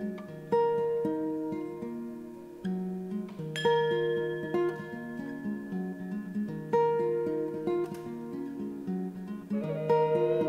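Classical guitar played fingerstyle, picked notes and arpeggios ringing and decaying, with a louder accented note about every three seconds. Near the end a vessel flute comes in with held notes over the guitar.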